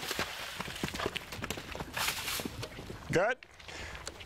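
Event horse splashing up out of a cross-country water jump, then its hoofbeats on dirt as it gallops away. A short shout from a person comes a little after three seconds.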